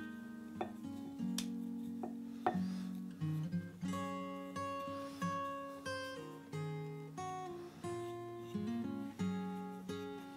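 Background music: plucked acoustic guitar notes, each one struck and left to fade before the next, about one or two a second.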